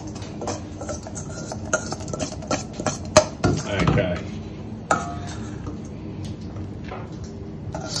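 Metal spoon clinking and scraping against a stainless steel mixing bowl as a chopped bruschetta topping is stirred and spooned out, a string of irregular light clicks.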